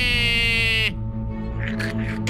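A high, drawn-out wailing cry, dramatising a stranded cat's unhappy crying, that sinks slightly in pitch and breaks off about a second in, over a steady background music bed.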